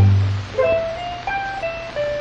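Steel guitar playing a country instrumental break. A full low chord at the start gives way to a melody of single held notes that step up and down, sliding between pitches.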